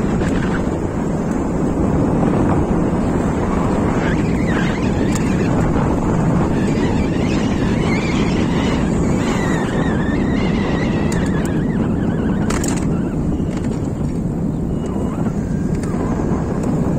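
Wind buffeting the microphone of a camera riding along on an e-bike, a loud steady rumble with road noise under it. A faint wavering whistle runs through the middle, and a few sharp clicks come near the end.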